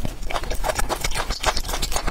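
Close-miked chewing of a small fruit-shaped candy: a dense run of quick, irregular wet clicks and crackles from the mouth.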